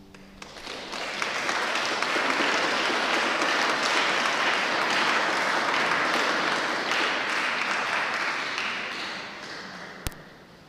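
The last of a pipe organ chord dies away, then a small congregation applauds, starting about half a second in and fading out near the end.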